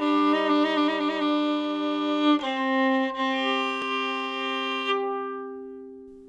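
A solo fiddle bowed: two notes sounded together with a quick ornamented flourish on the upper note, then a change to new held notes about two and a half seconds in, the last note dying away over the final second or two.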